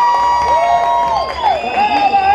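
Crowd cheering, with several high-pitched held screams that overlap and fall off in pitch about a second in.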